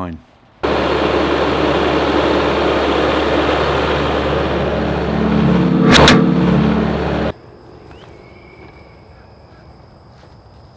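Tractor diesel engine running steadily, swelling in level about five seconds in, with a sharp clunk about six seconds in. It cuts off abruptly about seven seconds in, leaving faint outdoor quiet.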